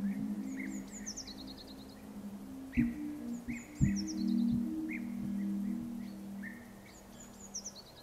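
Soft instrumental music of sustained low notes with a few plucked notes, fading down toward the end. A bird sings over it, giving a short high run of notes that drops in pitch about three times, plus scattered chirps.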